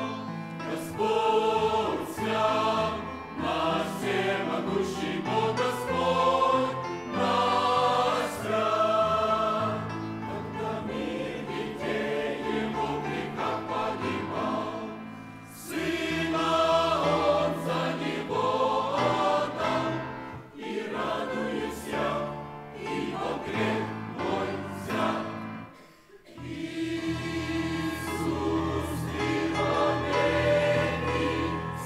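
Mixed choir of men's and women's voices singing a hymn in long phrases, with brief breaths between phrases and a short lull about 26 seconds in.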